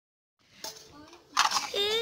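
Dead silence for the first moment, then faint background sound, then a voice starts speaking about two-thirds of the way in.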